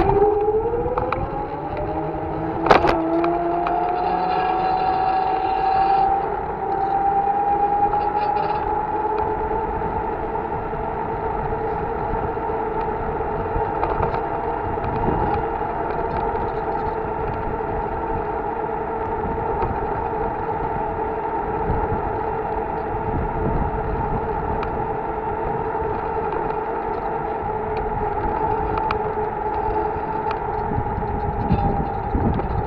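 A ridden vehicle's motor whining as it pulls away from a stop, its pitch rising for about ten seconds and then holding steady at cruising speed, over road and wind rumble. A single sharp click about three seconds in.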